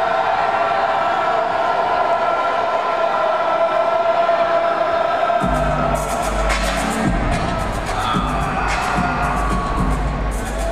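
Arena PA music playing over crowd noise in a gymnasium. About halfway through, a heavy bass beat with sharp, regular drum hits kicks in.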